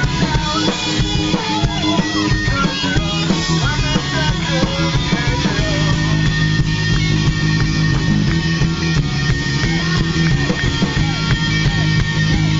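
Live rock band playing with electric guitar, bass guitar and drums. A voice shouted through a megaphone wavers over it in the first few seconds, then the band carries on with a held high note and a steady beat.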